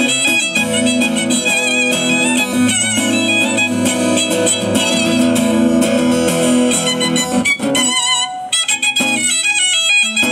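Violin and acoustic guitar playing live together: the violin carries the melody with vibrato over the guitar's accompaniment. Near the end the low accompaniment drops away for a moment, leaving the violin almost alone, before the guitar comes back in.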